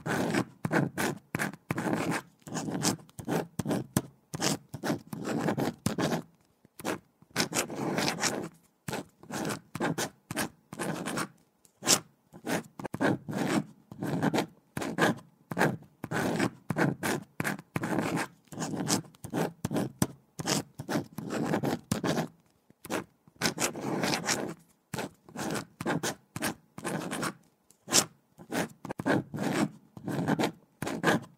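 Pen writing on paper: a run of short scratching strokes, several a second, broken now and then by brief pauses.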